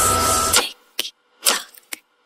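The electronic music stops about half a second in. A clock's tick-tock follows, sharp clicks at about two a second, alternating a fuller tick with a shorter, sharper tock.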